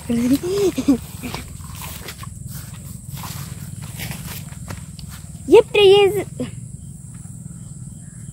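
A child's wordless, high-pitched vocal calls: short ones in the first second and one long, wavering call about five and a half seconds in, over a steady low rumble.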